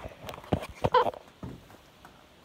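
Sneakered footsteps on a wooden floor: a handful of sharp steps and knocks in the first second and a half, one with a short pitched sound about a second in, then quieter.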